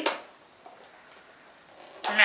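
Faint rustling and crinkling of a clear plastic wrapper being pulled off a small cardboard Funko Mystery Minis blind box by hand.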